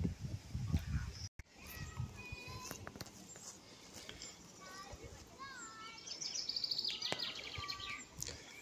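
Songbirds singing in the trees: scattered short chirps and whistled gliding notes, then a fast trill of repeated notes falling in pitch about six seconds in.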